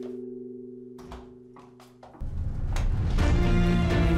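Dramatic soundtrack music: a held drone fades away under a few soft knocks, then the score comes in loudly with sustained notes just over two seconds in.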